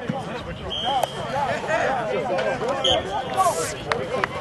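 Many voices talking over one another, a group's chatter with no single clear speaker, with a few sharp clicks near the end.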